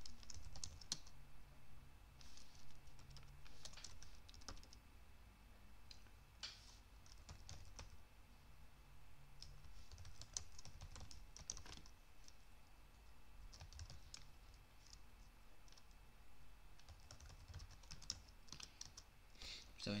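Faint computer keyboard typing: short bursts of keystrokes with pauses between them.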